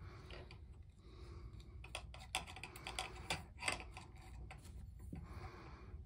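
Faint, irregular small clicks and light scraping of a threaded steel bolt and metal rod sections being screwed together by hand.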